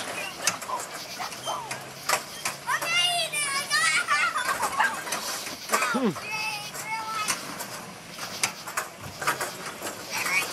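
Children's high voices shouting and squealing over one another while riding bumper cars, with scattered knocks between the calls.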